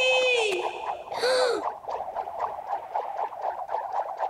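A cartoon character's long 'Whee!' trails off with falling pitch, and a short falling vocal cry follows about a second in. Then comes a run of cartoon bubbling from a hole in the ice: quick, irregular blips, several a second.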